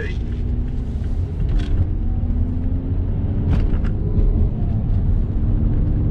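Cabin noise of a 2009 Mazda 3 SP25 on the move: its 2.5-litre four-cylinder engine running under a steady low road rumble. The engine note climbs slightly in the second half. The car is driving smoothly with no underbody rattles.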